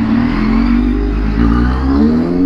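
Kawasaki Z800 inline-four engine running at low revs in slow traffic, its pitch edging up a little near the end, with wind rushing over the microphone.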